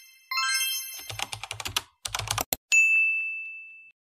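Outro sound effects: a bright chime, then rapid computer-keyboard typing for about a second and a half, a single click, and a clear ding that fades away.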